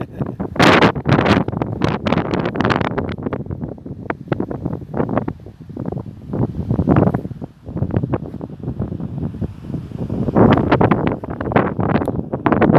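Wind buffeting a phone's microphone in loud, uneven gusts.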